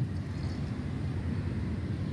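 Low, steady outdoor background rumble with no distinct event in it.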